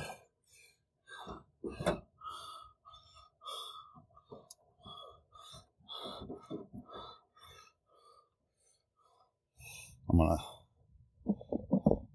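Faint, scattered clicks and rustles of hands handling the loosened trim assembly and the phone, with a couple of sharper knocks in the first two seconds and a man's voice briefly near the end.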